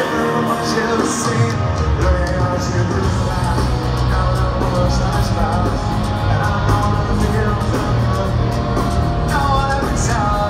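Rock band playing live through a concert PA, with guitars and a sung vocal line; the bass end of the band swells in about a second and a half in and stays heavy.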